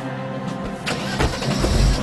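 A car door slams shut about a second in, then a vintage vehicle's engine starts and runs with a low, pulsing rumble, under background music.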